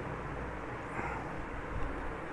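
Steady low background noise, a rumble and hiss with no speech, with a faint short sound about a second in.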